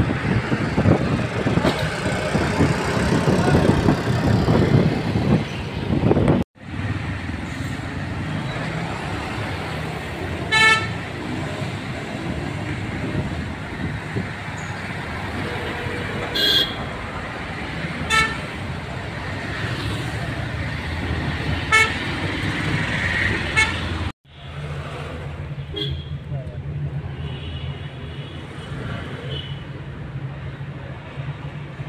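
Busy city street traffic: engines and road noise loudest at the start as buses pass close by, with about five short horn toots through the middle. Near the end the sound changes to a steadier low engine hum heard from inside a car's cabin.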